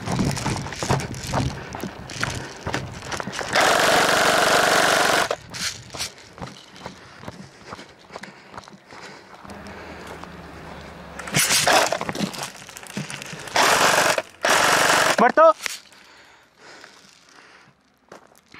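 Airsoft electric gun firing full-auto bursts: one long rattling burst of nearly two seconds about three and a half seconds in, then two shorter bursts near 11 and 14 seconds. Footsteps and brush rustling come between the bursts.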